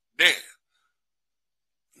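A man says a single short word that trails off breathily, followed by about a second and a half of dead silence.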